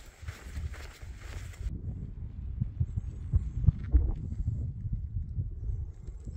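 Wind buffeting a phone's microphone: an irregular low rumble with soft thumps, and a hiss that stops suddenly a little under two seconds in.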